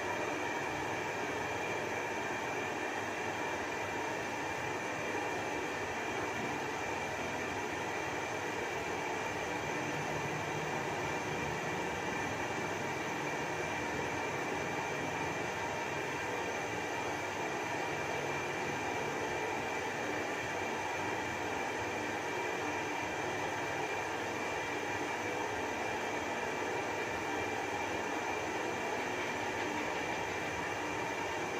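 Gas stove burner running under a wok of boiling water: a steady rushing noise with the bubbling of the pot, unchanging throughout.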